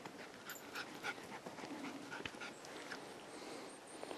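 A dog panting close by, in quick short breaths that run for the first two-thirds and then ease off.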